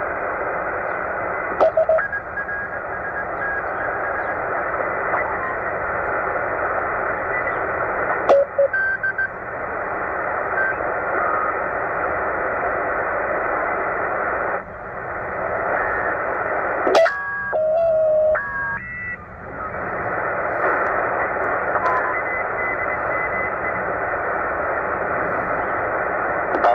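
Tecsun PL-990x shortwave receiver in lower sideband being tuned by hand up the 40-metre amateur band. Its speaker gives a steady rush of band noise with short whistling tones of signals sliding past and a few sharp clicks. About 17 seconds in, a brief cluster of shifting, stepping tones comes through from a mistuned signal.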